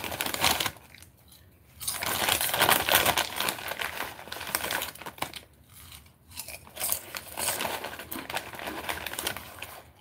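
Plastic potato-chip bag crinkling as a hand rummages in it and pulls out chips, with two short lulls, about a second in and again after five seconds.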